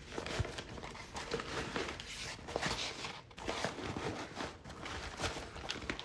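Rustling and shuffling of a soft fabric carrying case being handled and shifted on a stone countertop, with scattered light knocks from the portable tire inflator inside it.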